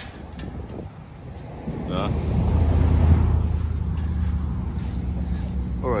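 A steady low engine hum, typical of a vehicle idling, swells in about two seconds in and then holds even.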